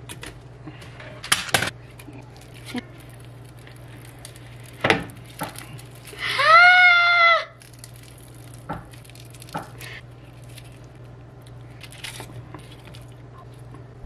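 A serving spoon knocks a few times against a non-stick pot as roasted vegetables and a baked block of feta are tipped in, giving scattered clunks. About six seconds in comes the loudest sound: a high, pitched whine with several overtones, rising at its start and then held for about a second.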